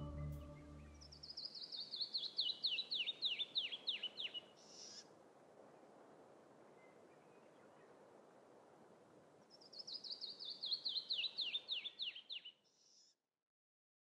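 A small bird sings twice. Each song is a cascade of quick whistled notes that fall steadily in pitch and lasts about three seconds. The songs sit over a faint steady hiss, and ambient music fades out just at the start.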